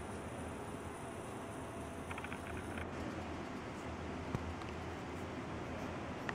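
Pencil strokes scratching lightly on sketchbook paper over a steady low room hum, with a few faint ticks and one sharper click about four seconds in.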